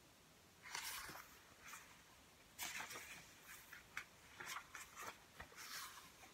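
A few short, faint rustles of paper as the pages of a hardcover picture book are turned and handled.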